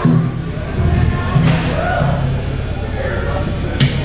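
A live metal band between songs: low notes held through the amplifiers, stepping in pitch, with voices over them. One sharp hit comes near the end.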